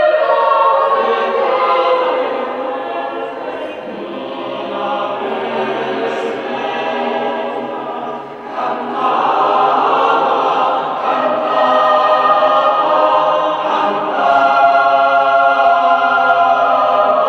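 A choir singing, the voices holding long sustained chords, with a brief dip in loudness about halfway through before it swells again.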